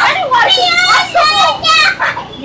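Young children's high-pitched voices calling out and shouting as they play, in several short bursts one after another.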